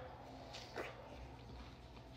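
Faint sounds of eating juicy watermelon: one brief wet mouth sound a little under a second in as a chunk is bitten into and chewed.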